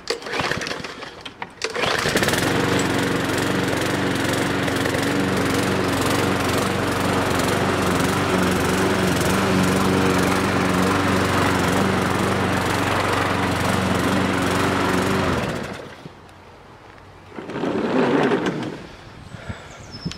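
Fuxtec petrol rotary lawn mower running steadily under load as it cuts and bags the long grass blades and debris loosened by aerating. The sound cuts off suddenly about three-quarters of the way through, followed by a shorter burst of the same sound.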